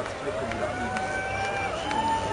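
A person's voice holding one long, level call for about a second and a half, dropping off at the end, then starting another a little higher, over crowd chatter.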